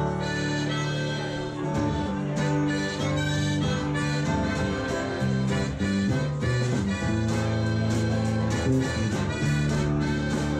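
Live band instrumental intro: a harmonica plays sustained notes over strummed acoustic guitar.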